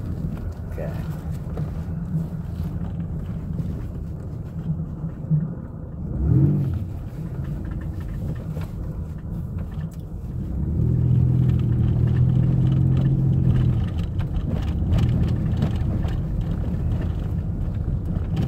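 Van engine and tyre noise heard from inside the cabin as it is driven slowly; about ten seconds in the engine note strengthens and grows louder for a few seconds as it accelerates, then eases off.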